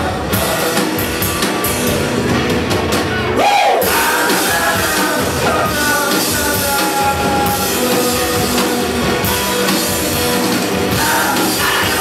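Rock band playing live: a man singing over guitar and drum kit, the music loud and steady throughout.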